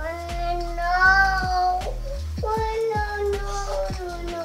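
A young child's high voice singing two long held notes, the first lifting slightly in pitch before breaking off near the middle, the second following shortly after.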